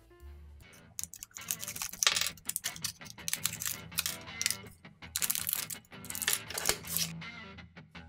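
Background music under a quick run of sharp little clicks and taps, from about a second in to near the end: scissors and small electronic parts being handled on a wooden tabletop.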